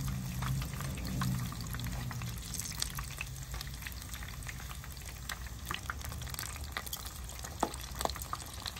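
Breaded fish fillet frying in hot oil in a frying pan, just after being flipped: a steady sizzle full of fine crackles and pops. A low hum runs under it for the first two seconds or so, then fades.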